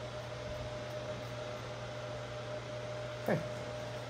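Steady low room hum and hiss with a faint held tone, with no distinct snips or knocks standing out; a single spoken word near the end.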